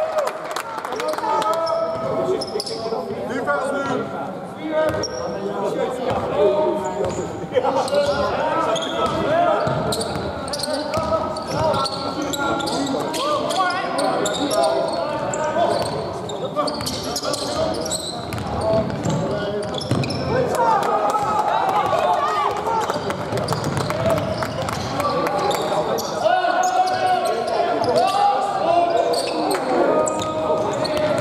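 A basketball bouncing on a wooden court, with indistinct voices of players and onlookers, in a large echoing sports hall.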